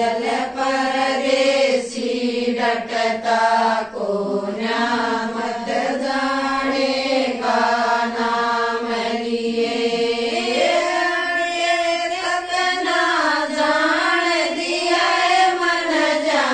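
A group of women singing a song together in unison, with long held notes; the melody steps up in pitch about ten seconds in.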